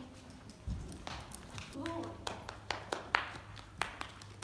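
Horse walking under saddle on soft arena footing: muffled hoof steps with a few sharp clicks from the tack, and a brief voice sound about two seconds in.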